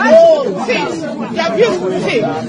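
Speech only: several people talking over one another in excited chatter.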